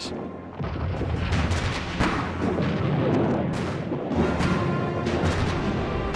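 Field artillery firing a barrage: repeated heavy booms over a continuous low rumble, with dramatic music underneath.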